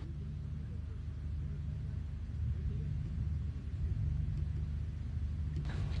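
Steady low rumble of background noise on the launch-pad audio, with nothing else standing out.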